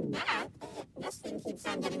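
Cartoon voice clip run through stacked audio effects: several pitch-shifted copies layered together, with gliding pitches and choppy breaks.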